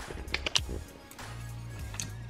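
Quiet background music with a low, steady bass note, and a few light clicks about half a second in.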